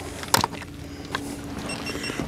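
A walleye being handled and unhooked in a landing net on a boat: a sharp metallic click about a third of a second in, then a lighter tap, over the steady low hum of the boat's outboard motor.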